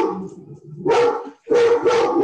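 A pet dog barking repeatedly, several sharp barks in quick succession.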